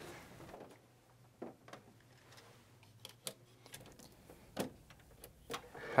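Faint, scattered clicks and light knocks of an Epson Perfection V750 flatbed scanner being handled: the lid opened and a plastic film holder set onto the glass. About six separate small taps spread over the few seconds.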